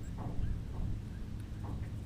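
Wind rumbling on the microphone, with a few faint taps and rustles of a crappie being unhooked by hand.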